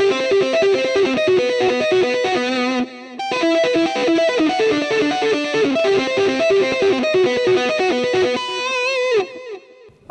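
Gold-top Les Paul-style electric guitar played through an amp: a fast hybrid-picked arpeggio pattern of quickly repeated single notes (pick and fingers together), with a brief break about three seconds in. It ends on a held note with vibrato that dies away shortly before the end.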